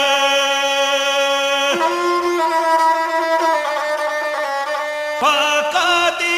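Gusle, the single-stringed bowed Balkan folk fiddle, playing between sung lines of a Serbian epic song: a long held note, then a shift to a higher note with quicker changes, and a wavering, vibrato-like tone again near the end.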